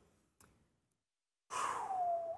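Near silence for about a second and a half, then a man's breathy sigh that falls in pitch.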